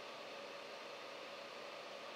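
Faint, steady hiss of room tone and microphone noise, with a faint steady hum.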